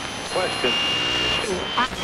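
AM radio being tuned across the dial: garbled snatches of speech from passing stations, with a steady high whistle for about a second in the middle.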